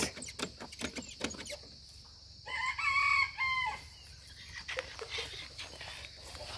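A rooster crowing once, about two and a half seconds in, lasting just over a second. Faint clicks and rustling come before and after it.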